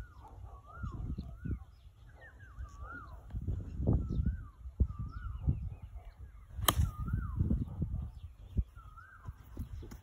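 A golf club strikes the ball once, a single sharp crack about two-thirds of the way through, over an uneven low rumble of wind on the microphone. A bird repeats a short call, dipping and rising in pitch, over and over.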